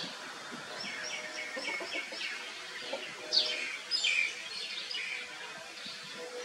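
Birds chirping outdoors: a quick run of short repeated high notes, then a few sharp downward-sweeping chirps a little past the middle.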